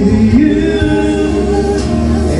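A man singing karaoke into a microphone over backing music, both played loud through PA speakers, with long held notes that glide between pitches.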